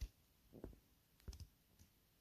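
Near silence with a few faint, short clicks and soft knocks scattered through it.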